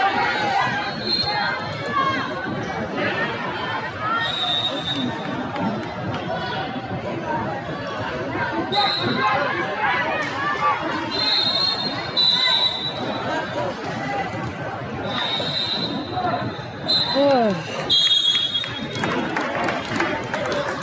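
Many voices talking at once across a large, echoing hall, with several short high-pitched tones heard over them.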